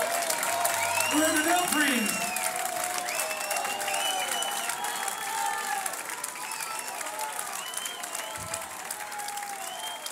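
Audience applauding, with voices shouting over the clapping; the applause slowly dies down.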